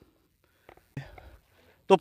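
Near silence with a few faint, brief sounds in the middle, then a man's voice starts loudly just before the end.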